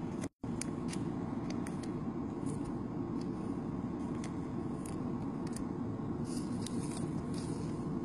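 Steady background noise with faint, scattered crinkles and clicks from foil Pokémon booster packs being handled; the sound cuts out completely for a moment near the start.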